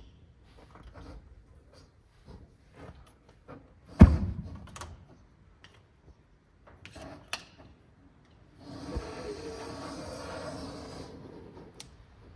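Fuel vapour in a flooded cylinder of a 1966 Hillman Imp engine lit with a gas torch: one loud, deep whump about four seconds in, amid a few light clicks and knocks. Near the end, about two seconds of steady hissing flame.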